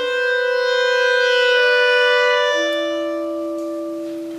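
Two clarinets playing a slow duo passage, both holding long sustained notes that change pitch partway through. The sound swells to its loudest about halfway in, then fades.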